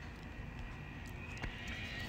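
Faint steady background rumble with a few soft ticks, between stretches of speech.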